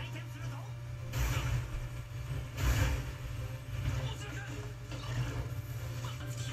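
Anime episode soundtrack playing in the background: faint Japanese dialogue with two short, loud rushing noise bursts, about one second in and just under three seconds in, over a steady low hum.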